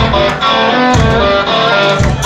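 A live band playing loudly, led by electric guitar over a bass line, with a low beat landing about once a second.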